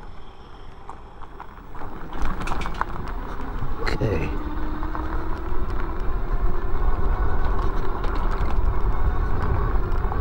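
Fat-tyre electric bike ridden off the pavement onto a rough dry dirt and grass trail: low rumble from the tyres and suspension with clicks and rattles over the bumps, getting louder about two seconds in, and one sharp knock a few seconds later.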